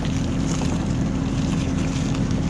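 Bobcat E26 mini excavator's diesel engine running steadily with a constant low hum as the machine tracks forward.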